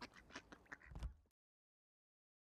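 Ducks quacking on a pond, several short calls, with a low thump about a second in. The sound cuts off suddenly soon after.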